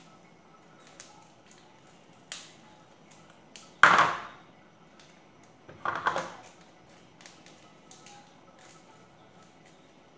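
Scissors snipping open small plastic seasoning sachets, with the packets crinkling: scattered light clicks and two louder, brief crackling snips about four and six seconds in.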